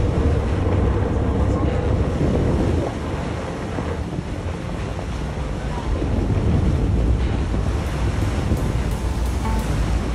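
Wind rumbling steadily on the microphone over the wash of the sea around a boat, with background music running underneath.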